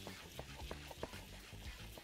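Onions and carrots being stirred with a spatula in a hot pot: faint, irregular light clicks and scrapes of the spatula against the pan over a soft sizzle.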